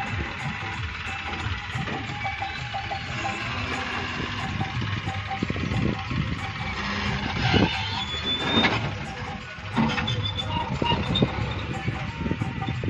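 Tractor diesel engine running, a steady low rumble with louder surges in the second half.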